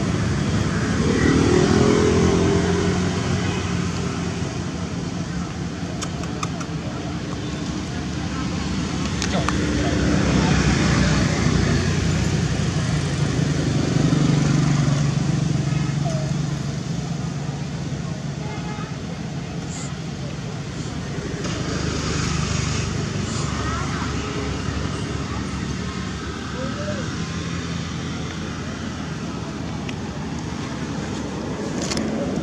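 Outdoor background of a steady engine rumble, as of passing motor traffic, swelling and fading several times, with indistinct voices mixed in.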